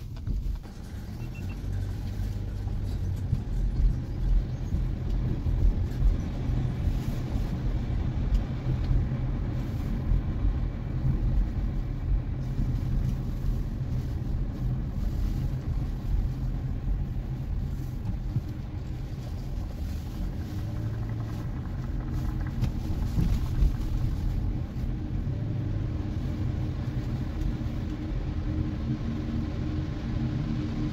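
Car driving through city streets, heard from inside the cabin: a steady low rumble of engine and tyre noise.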